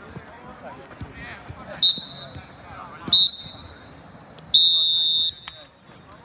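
Referee's whistle blown three times: a short blast about two seconds in, another about a second later, then a longer, loudest blast near the end, the usual pattern for the full-time signal. Faint players' voices lie underneath.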